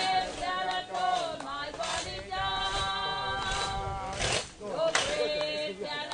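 A group of mourners, men and women, singing a gospel chorus together unaccompanied, in held, drawn-out notes.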